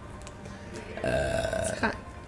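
A person's voice making one drawn-out, level-pitched vocal sound, like a held 'ehh', starting about a second in and lasting nearly a second, between spoken words.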